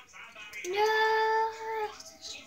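A child's voice drawing out a sung "yeah" as one long, steady note of about a second, starting a little under a second in.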